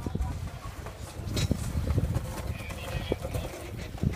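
Irregular clattering knocks on stone paving over a constant low rumble of wind on the microphone.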